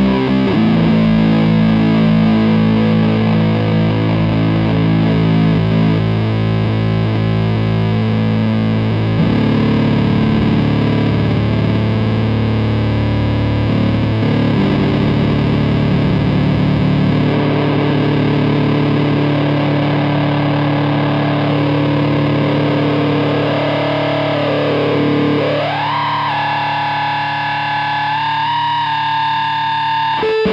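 Electric guitar played through a Redwitch Fuzzgod II fuzz pedal: long fuzzed notes and chords ringing out and changing every few seconds while the pedal's knobs are turned, the tone shifting. Near the end a note swoops down and back up in pitch.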